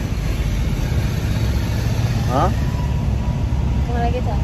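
Steady low rumble of a small car's engine and road noise, heard from inside the cabin while riding in a taxi.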